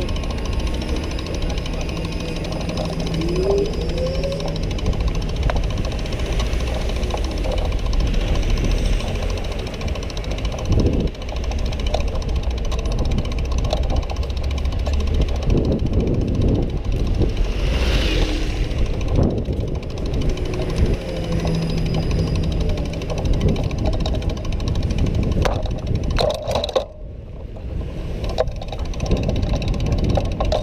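Busy downtown street noise with city buses passing close by, over a steady low rumble from a bike-mounted camera. About three seconds in comes a rising whine from an electric trolleybus pulling away.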